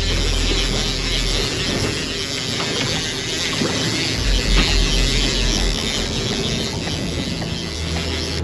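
Big-game lever-drag fishing reel ratcheting steadily with a bluefin tuna on the line, over low wind rumble on the microphone.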